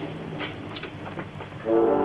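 Orchestral film score: a low held note with a few faint knocks, then a loud sustained brass chord comes in near the end.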